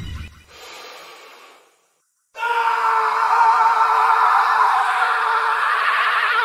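A short, fading sound, a moment of dead silence, then a long, loud, wavering scream that starts suddenly about two and a half seconds in and holds to the end.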